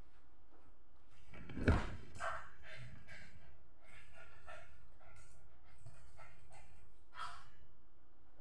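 Large dog barking in play, reaching up for a held-up pillow. The loudest bark comes about two seconds in, with shorter sounds after it and another clear one near the end.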